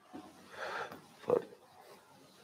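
Two short non-speech vocal noises from a person: a breathy one just under a second in, then a sharper, louder one about a second and a third in.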